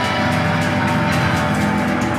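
Live rock band playing loud and steady, with held organ chords and electric guitar over drum and cymbal hits.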